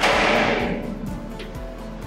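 Steel storm-shelter door's three-point locking handle swung to lock, its bolts shooting home with a sudden metallic clunk that rings and fades over about a second. Background music plays underneath.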